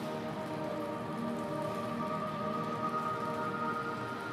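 Slow ambient background music of held tones, with a steady rain-like hiss under it.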